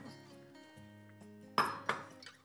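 A wire whisk knocks twice against a glass bowl near the end, sharp and brief, as a thick yogurt sauce is being beaten. Soft background music plays underneath.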